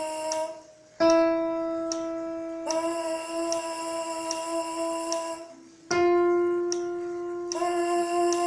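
Trombone mouthpiece buzzing held notes in a warm-up, alternating with a piano accompaniment. A piano note sounds about a second in and is answered by a buzzed note at the same pitch, held steady for about three seconds. The pattern repeats with a piano note near six seconds and a buzz starting just before the end.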